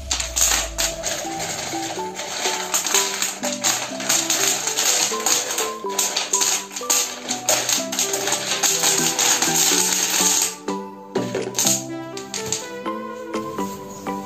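Background music with a melody, over a dense rattle of small stones poured from a plastic dipper down into a PVC pipe while a water filter is being filled. The rattle eases off about ten seconds in.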